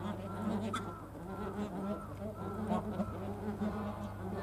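Bar-headed geese calling with short, repeated arched notes, two or three a second, over a steady low buzz.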